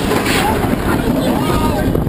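Wind rushing over the ride camera's microphone with the rumble of a steel roller-coaster train running along its track, while riders give short rising and falling yells twice.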